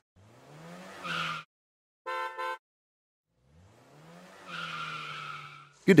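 Car sound effects in a short jingle: an engine revving up in pitch, two short horn beeps, then the engine revving up again and holding a steady note.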